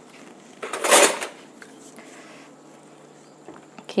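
Kitchen handling noise: one short scrape or rustle about a second in, over faint room tone.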